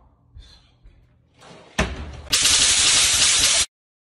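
A wooden kitchen cabinet door slams shut. Straight after it comes a loud burst of harsh, even hiss-like noise lasting over a second, which cuts off abruptly.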